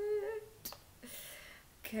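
A woman's short excited hum, held at one pitch for about half a second, then a single click and a soft breath.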